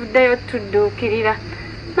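A woman speaking in short phrases over a steady high-pitched background drone.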